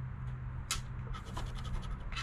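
A poker-chip-style scratcher coin scraping the coating off a Gold Rush Supreme lottery scratch-off ticket in a run of short strokes.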